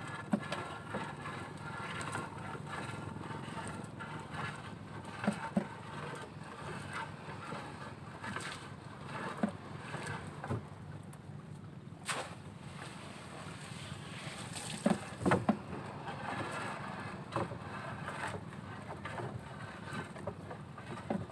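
A netted shrimp trap being hauled by hand over the side of a small outrigger boat: water splashing and dripping from the net, with scattered knocks against the hull, over a steady low hum. The loudest knocks come about five seconds and fifteen seconds in.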